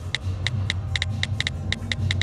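Smartphone on-screen keyboard key-click sounds as someone types quickly, an irregular run of sharp ticks about six a second, over a low steady hum.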